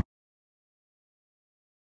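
Silence: the sound track is blank, the engine sound before it cut off abruptly.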